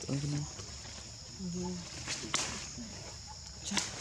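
A steady high-pitched insect drone, with two short, low murmured voice sounds and a couple of sharp clicks.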